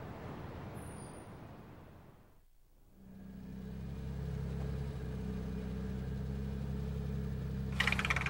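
A rumbling noise fades away about two and a half seconds in. From about three seconds a car engine idles steadily with a low, even hum.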